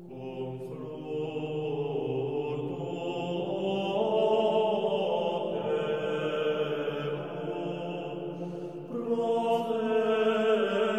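Slow chant of long held vocal notes, the pitch shifting every couple of seconds and swelling louder about four seconds in and again near the end.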